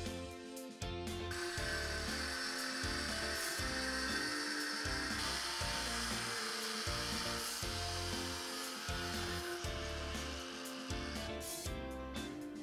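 Angle grinder with a cut-off disc cutting through a metal plate, a steady gritty whine that starts about a second in and stops near the end. Background music with a steady beat plays underneath.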